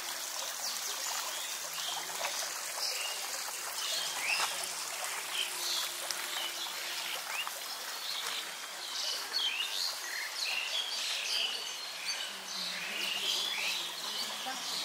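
Many small birds chirping and calling over a steady background hiss, the calls growing thicker in the second half.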